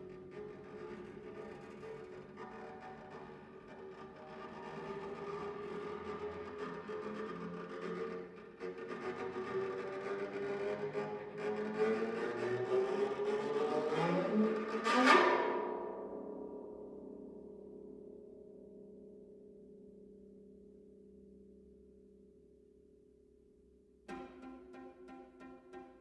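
Bass zither sounding several sustained tones that slowly glide upward and grow louder, peaking in a sharp rising sweep about fifteen seconds in, then ringing on and fading away.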